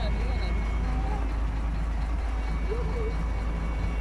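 Heavy diesel engines of a Doosan DX225LCA excavator and a wheel loader stuck in mud, running steadily as the excavator works to free the loader. Faint voices come and go over the engine rumble.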